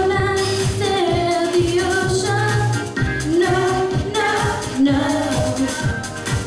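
A young girl singing a pop song into a microphone over a recorded backing track with a steady beat, holding long notes between shorter phrases.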